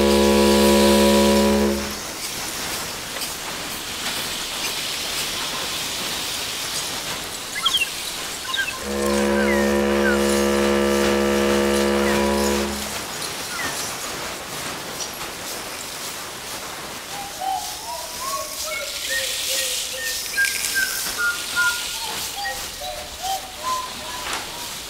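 A ship's horn sounds two long, steady blasts, the first ending about two seconds in and the second lasting about four seconds near the middle, over a steady wash of sea noise. Seagulls cry throughout, with a run of wavering calls in the last third.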